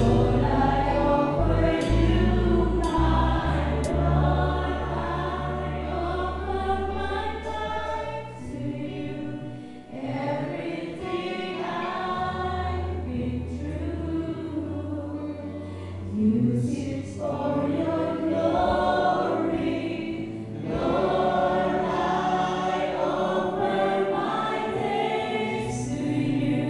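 Live praise-and-worship music: several women singing together into microphones, backed by a small church band of keyboard, guitars and drums, with long held bass notes underneath.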